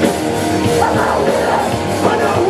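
Live hardcore punk band playing loud, dense distorted electric guitar with bass and a drum kit, with no break.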